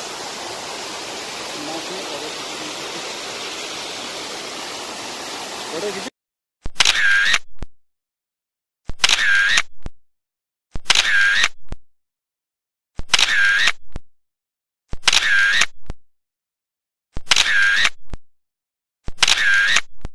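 Steady rush of falling water from a mountain waterfall, which cuts off suddenly about six seconds in. After that, a camera-shutter sound effect repeats about every two seconds over dead silence, each one lasting about a second.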